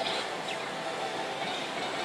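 Steady din of a pachislot hall: a dense, even wash of machine noise from the surrounding slot and pachinko machines.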